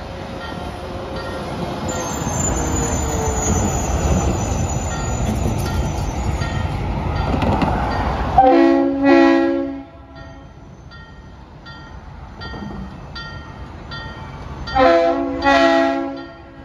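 A semi tractor-trailer passes close by, its engine and tyres loud through the first half. Then the Alco RS27 locomotive sounds its horn in two short pairs of blasts, the second pair near the end. In the quiet between the pairs, a bell rings faintly about twice a second.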